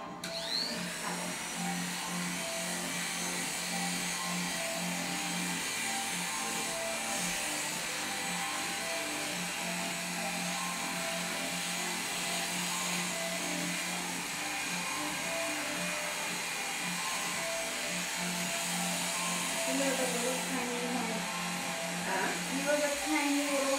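Electric hair clipper switched on, its whine rising as the motor spins up, then running steadily while it cuts the short hair at the nape and sides.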